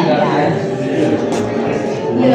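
Several people talking at once, indistinct chatter in a room, with one short click a little past halfway.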